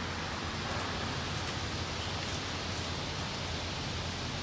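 Steady, even hiss of outdoor background noise with no distinct sounds standing out.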